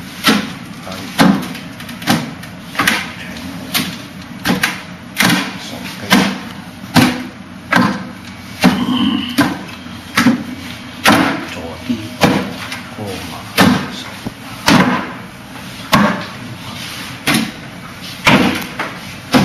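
Wing Chun wooden dummy struck over and over by the practitioner's forearms and hands against its wooden arms and trunk: sharp wooden knocks in an uneven rhythm, about one and a half to two a second.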